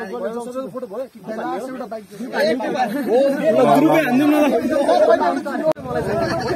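Several young men talking over one another in a group.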